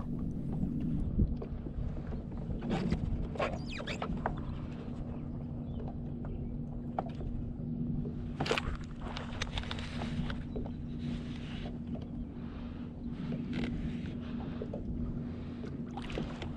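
Water lapping against the plastic hull of a Hobie Outback pedal kayak, with scattered small knocks and clicks, over a steady low hum.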